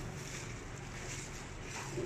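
Plastic carrier bags rustling in a few short bursts over a steady low background rumble.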